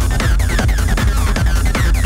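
Live electronic techno from hardware: a Digitakt drum pattern with a steady kick under a Behringer TD-3 acid synth line sent through delay. Quick falling high notes repeat several times a second over the beat.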